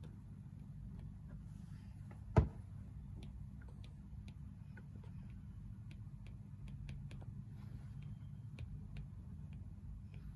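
Apple Pencil 2 tip tapping and sliding on an iPad Air 4's glass screen during handwriting: a run of light irregular clicks, with one much louder knock about two and a half seconds in, over a low steady hum.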